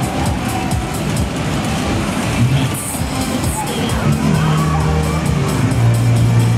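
Loud music from the sound system of a Mack Music Express fairground ride while the ride is running, with deep held bass notes coming in about four seconds in.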